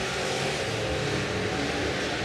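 Several street stock race cars' engines running together on a dirt oval during the race, heard as one steady mix of engine sound.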